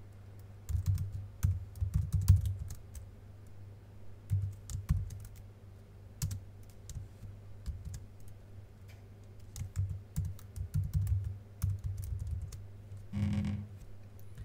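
Typing on a computer keyboard: irregular bursts of keystrokes with short pauses between them.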